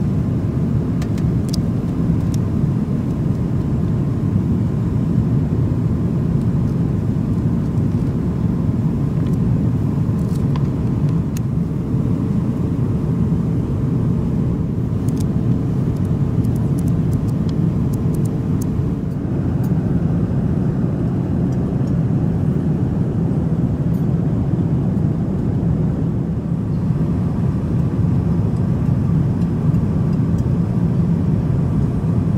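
Airbus A350-900 cabin noise in flight: a steady, loud low rumble of engines and airflow, with a few faint light clicks and rustles from magazine pages being turned.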